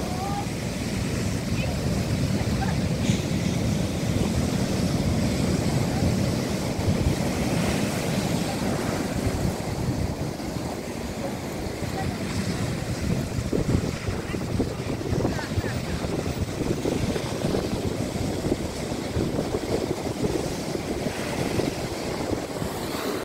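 Atlantic waves breaking and washing over a flat rocky shore: a continuous deep rushing of surf that swells and eases as each wave comes in, a little louder in the first half.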